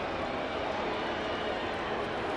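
Steady ballpark crowd noise.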